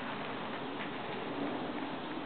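Faint hoofbeats of a horse trotting on sand arena footing, a couple of light sharp ticks about a second in, over a steady outdoor hiss.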